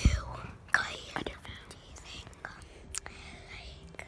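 A girl whispering close to the microphone, with a sharp thump at the very start.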